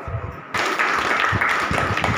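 Audience of seated schoolchildren clapping, breaking into steady applause about half a second in after a few low thumps.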